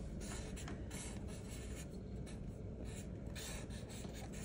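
Sharpie fine-point marker drawing on paper: a run of short scratchy strokes that start and stop every fraction of a second, with brief pauses between them.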